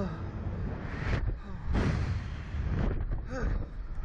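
Wind rushing and buffeting the microphone of a camera riding in a swinging Slingshot capsule, a low rumble rising and falling in swells, loudest a little under halfway in. A rider's short exclamation comes about three seconds in.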